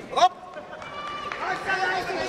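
A short, loud cry falling sharply in pitch just after the start, then several voices calling out over one another amid crowd noise.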